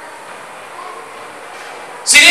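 Steady background noise of the hall and its sound system: an even hiss with no speech, in a pause of the sermon.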